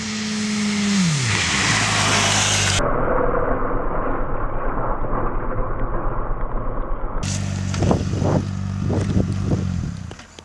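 Inline-four sport motorcycle engines running at speed: a steady engine note that falls in pitch about a second in as a bike passes and pulls away. After a cut comes a steady engine drone with a few short, sharp bursts near the end.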